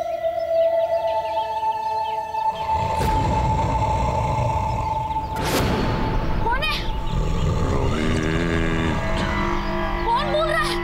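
Dramatic background score: held synth tones, then a low rumbling drone from about two and a half seconds in, with two whooshing hits and a rising glide in pitch.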